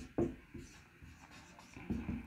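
Marker pen writing on a whiteboard, faint scratchy strokes as a word is written out. There are two quick knocks right at the start.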